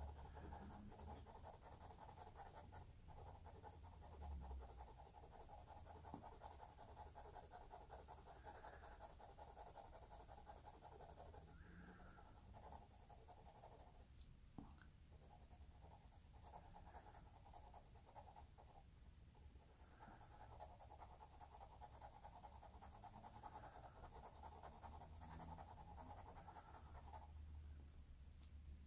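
Graphite pencil shading on drawing paper: faint, continuous scratching of small strokes, with a couple of short pauses.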